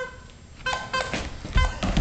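A dog's noise-making toy, being bitten, gives a string of short tones at one pitch with clicks between them. There is one short tone at the very start, and the run begins about two-thirds of a second in.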